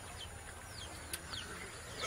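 Faint bird calls: several short, high chirps that fall in pitch, with a single sharp click just after a second in.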